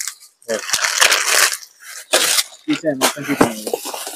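Plastic packaging rustling and crinkling as packs of hair clips are handled: a longer rustle about half a second in and a short sharp crinkle near the middle. Quieter voices follow near the end.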